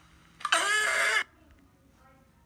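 A person's loud, shrill wordless cry, about a second long with a slightly falling pitch, played back from a video on a screen.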